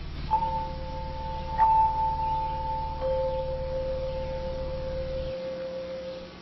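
Two steady, held musical tones, a starting pitch sounded before a hymn. A higher note comes in about a third of a second in and fades near the end. A lower note sounds with it and grows stronger about halfway, running on past the end.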